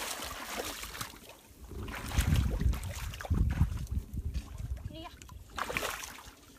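Muddy pond water splashing and sloshing as people wade through it knee-deep, with heavy low thuds and rumbles from the water about two to four seconds in.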